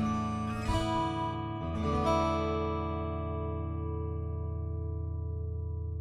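Calm instrumental music: strummed guitar chords, with new chords about a second in and about two seconds in, then left to ring and slowly fade.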